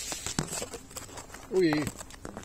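Leafy branches of a Canary Island strawberry tree rustling and crackling as they are handled and pulled close, a run of short clicks and snaps. A short exclamation comes near the end.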